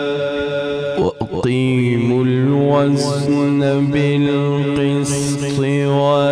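A male qari's melodic Quran recitation (tilawat) through a microphone: a long held note, a short break for breath about a second in, then a new phrase with the voice gliding up and down in ornamented runs.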